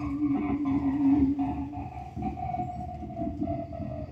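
Live free-improvised music from voice, alto saxophone, drums and electric bass: a long held note gives way to a higher held note about one and a half seconds in, over busy low drums and bass.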